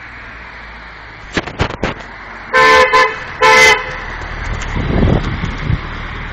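A car horn sounding two short blasts in quick succession, about two and a half seconds in. A low rumble follows and grows louder toward the end.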